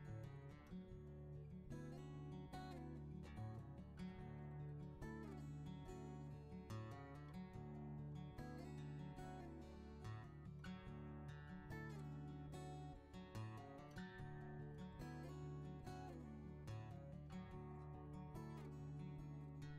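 Background music: gently strummed and plucked acoustic guitar with a steady rhythm.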